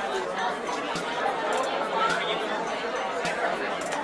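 Table tennis ball clicking off paddles and the table in a rally, irregular sharp clicks about a second apart, under indistinct voices.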